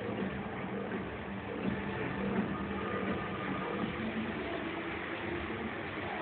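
Motorcycle engine running steadily as the bike circles inside a steel-mesh globe of death, a continuous drone with a wavering pitch.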